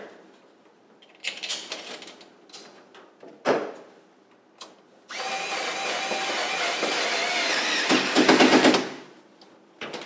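Cordless screwdriver running for about four seconds halfway through, driving the last screw into a metal oven door, a little louder just before it stops. Before it, light handling clicks and a single knock as the screwdriver is set on the screw.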